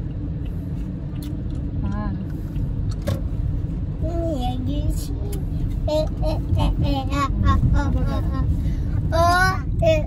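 Steady low rumble of a car in motion, heard from inside the cabin. A child's voice comes in on and off from about four seconds in.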